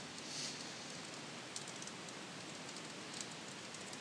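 Faint computer keyboard keystrokes, a few light scattered clicks, over a steady hiss of recording noise.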